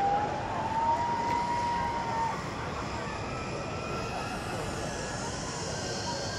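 Zip-wire trolley pulleys running along a steel cable: a steady whine that rises slightly in pitch and stops about two seconds in, over a constant rush of background noise. A fainter, higher whine falls in pitch near the end.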